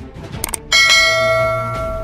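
Two quick clicks about half a second in, then a bright bell chime that rings out and slowly fades: the notification-bell sound effect of a YouTube subscribe-button animation.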